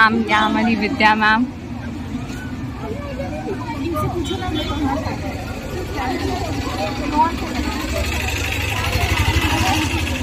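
A Tata Marcopolo school bus's engine running close by, getting louder over the last couple of seconds as the bus draws up, under the chatter of a crowd of students.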